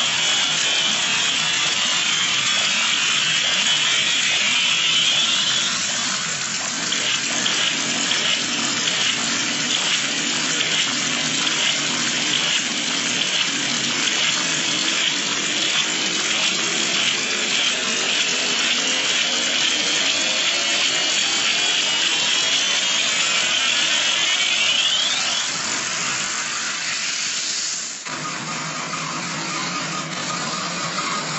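Harsh, loud distorted electronic noise like static, with a regular pulsing pattern in the middle and a few sweeping tones. It drops off suddenly a couple of seconds before the end.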